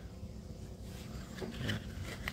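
Quiet room noise with a low steady hum and a few faint clicks from a hand handling the plastic parts of a Stihl 026 chainsaw whose engine is not running.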